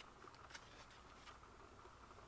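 Near silence, with a faint soft rustle about half a second in as a picture-book page is turned.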